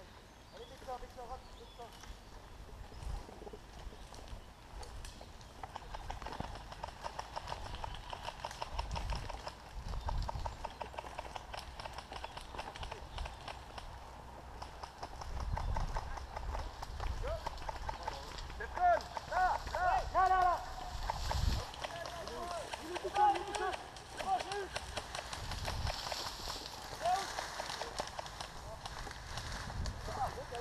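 Indistinct voices, clearest about two-thirds of the way through, over a quick run of light ticks and occasional dull low thumps.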